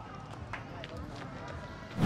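Outdoor town ambience: a steady low background hum with faint distant voices and a few light ticks.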